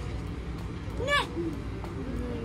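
One short voiced sound, rising then falling in pitch, about a second in, over a steady low background hum.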